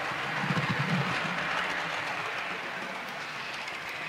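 Model Class 350 electric train running along the layout's track, its small motor whirring with wheel and rail noise. The sound is strongest in the first second and fades gently as the train moves away.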